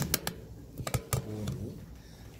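A few sharp clicks and taps, a quick cluster at the start and another about a second in, with a short low murmur of a voice after the second cluster.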